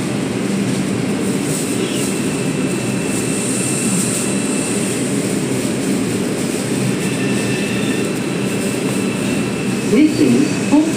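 R142 subway train running through a tunnel: a steady low rumble of wheels on rail and the car body. A faint thin high whine runs alongside it from a few seconds in.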